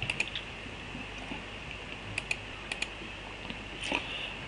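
A few scattered key clicks on a computer keyboard: a short cluster right at the start, two pairs of clicks near the middle and one more near the end, over a faint low hum.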